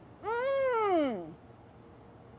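A woman's single drawn-out wordless vocal sound while eating, sliding up and then falling in pitch, about a second long: an appreciative sound over the food.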